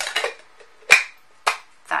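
Sharp plastic clicks and knocks from a portable water flosser's parts being fitted together and handled: about four short clicks, the loudest about a second in.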